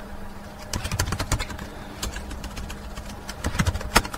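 Computer keyboard clicking: a scatter of light, irregular key taps, with one sharper click near the end. A faint steady low electrical hum runs underneath.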